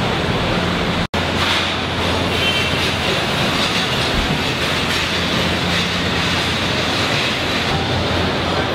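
Steady industrial din of a car assembly line: conveyor and machinery noise with a low hum underneath. The sound drops out for an instant about a second in.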